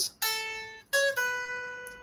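Headless electric guitar picking three single notes, each ringing and fading, the first about a fifth of a second in and the other two close together near the middle. It is a short phrase made from scale notes played out of their usual order.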